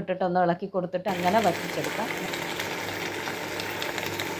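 Beef masala sizzling in a pan as it dry-roasts down: a steady crackling hiss that starts about a second in, after a few spoken words.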